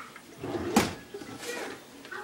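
A single sharp knock or clunk just under a second in, with a faint voice after it.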